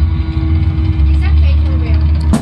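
Loud amplified electric-guitar drone through effects: a heavy low hum under sustained feedback tones, with a few falling pitched glides about a second in.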